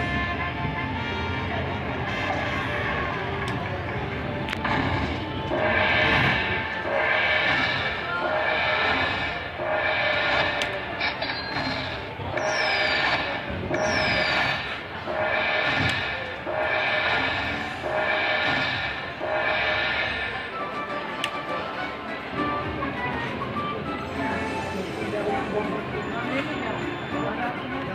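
Aristocrat Dragon Link slot machine playing its electronic bonus tally tones: a chiming note about once a second as each prize coin's value is added to the win. The notes start about five seconds in and stop about twenty seconds in, with two short falling chirps in the middle, over casino background noise.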